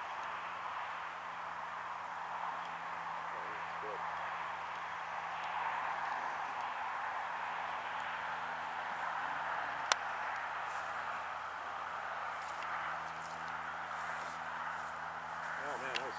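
Steady outdoor background noise with a faint, even low hum underneath, and a single sharp click about ten seconds in.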